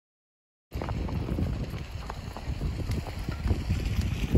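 Silence at first, then from under a second in, outdoor wind buffeting the microphone with a low rumble, over which come a few faint, irregular knocks.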